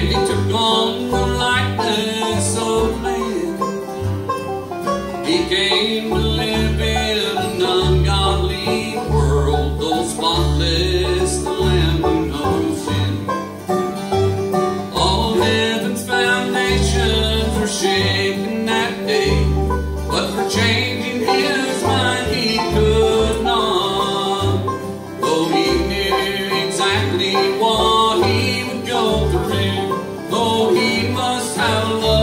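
Bluegrass gospel band playing live: strummed acoustic guitars, a mandolin and plucked upright bass notes.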